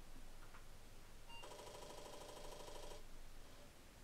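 Apple IIe rebooting: a short beep about a second in, then a buzzing rattle for about a second and a half, typical of the Disk II floppy drive's head recalibrating against its stop as it starts to boot the disk.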